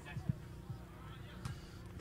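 Faint beach soccer match ambience: a steady low rumble with a few soft thumps and distant voices.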